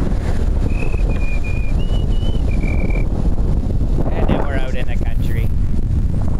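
Wind buffeting the microphone as a power wheelchair speeds downhill, with someone whistling a short run of about six high notes about a second in.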